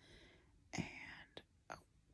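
A woman whispering softly: a couple of short whispered words with breathy pauses between them and a couple of faint clicks.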